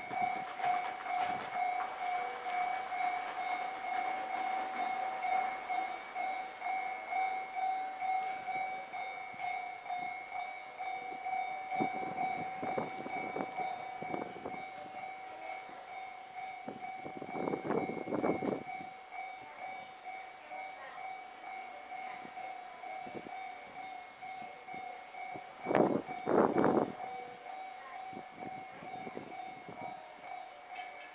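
A steady two-tone ringing warning signal, of the kind sounded at a station or level crossing, holds throughout. Brief louder rushes of noise come three times: about twelve seconds in, about eighteen seconds in and near the end.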